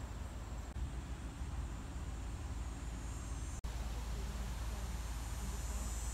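Steady low rumble of outdoor background noise. It cuts out for an instant about three and a half seconds in.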